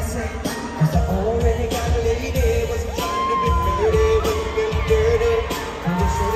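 Live pop music played loud over a big arena sound system, with a heavy bass beat and male voices singing into microphones; held sung notes come in about halfway through.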